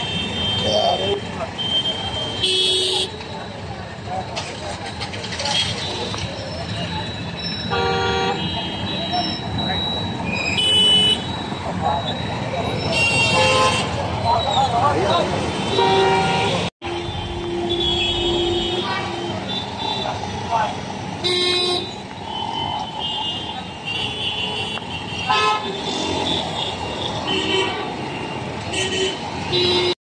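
Jammed street traffic: many vehicle horns honking again and again, short toots and longer blasts from different vehicles, over the steady running of motorcycle, scooter and car engines. The sound cuts out for an instant a little past the middle.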